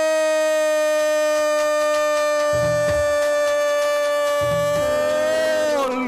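A man's long goal shout, a drawn-out 'Gooool', held on one steady pitch for several seconds, then falling off and breaking just before the end: a radio football commentator's goal call.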